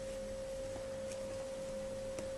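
A steady, even whine, a single held tone with a fainter lower hum beneath it, and a couple of faint ticks about a second in.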